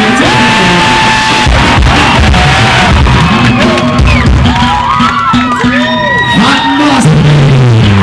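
Rock band on an outdoor stage playing loose, unstructured notes between songs, with sliding, bending pitched notes and held tones over low bass, and a crowd shouting and whooping.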